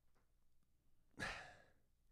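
A man's single sigh, a breathy exhale into a close microphone, a little over a second in; otherwise near silence.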